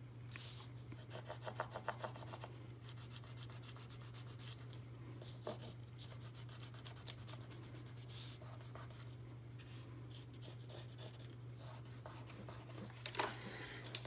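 Stabilo pencil scribbling and rubbing on collaged book-page paper, in two runs of quick back-and-forth strokes with single scrapes between, over a steady low hum.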